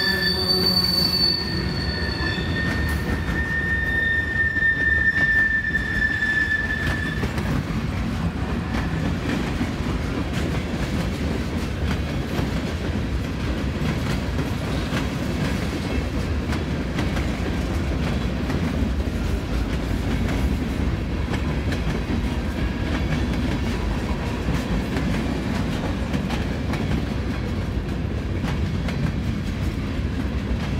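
Freight cars of a mixed train rolling past over a grade crossing, a steady rumble and rattle of steel wheels on rail. High-pitched wheel squeal is heard over the first several seconds, then fades out.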